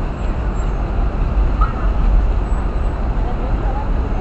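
Busy city street traffic: a steady low rumble of engines and tyres at an intersection, with faint voices of passers-by.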